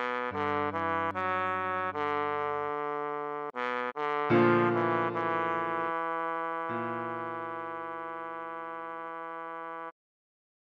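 Trombone playing a melody over sustained chords. It starts with a run of short notes, and from about four seconds in the chords change and long held notes follow. It stops shortly before the end.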